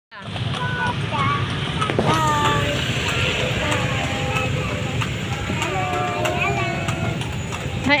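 Steady low rumble of an open-sided vehicle riding along a street, with scattered children's voices over it.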